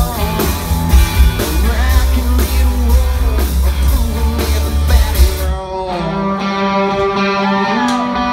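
Live country-rock band playing loud: electric guitars, bass and drums under a male lead vocal. About five and a half seconds in, the drums and bass drop out, leaving mainly electric guitar ringing on.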